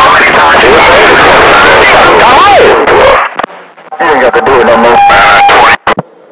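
Loud, distorted radio voices that are hard to make out, typical of CB radio traffic heard through the set's speaker. The voices break off about three seconds in and return about a second later with a steady tone under them.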